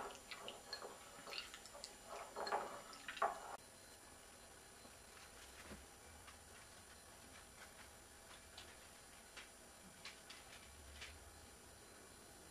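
Wet squishing and dripping as a hand kneads a lump of magnetic slime in a glass bowl, squeezing out the excess liquid, for about three and a half seconds. Then it cuts to near silence with a few faint ticks.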